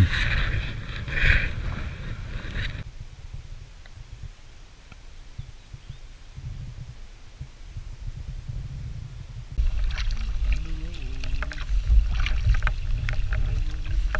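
Kayak paddling on calm water: paddle blades dipping and dripping, with a low wind rumble on the microphone. The first few seconds hold light splashing, then it goes quiet, and from about ten seconds in the paddle strokes and splashes are loud and close, over a stronger rumble.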